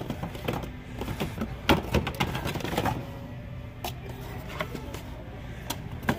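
Boxed action figures in cardboard-and-plastic packaging being shuffled on a store shelf: irregular light clicks and knocks over a steady low hum of store background noise.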